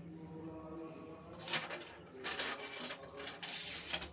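Rustling and handling noises close to the microphone. They come in several short bursts from about a second and a half in, as a person moves up against the recording phone.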